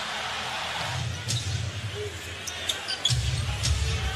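Arena crowd cheering a made basket, easing off about a second in, then a basketball being dribbled on the hardwood court with sneakers squeaking.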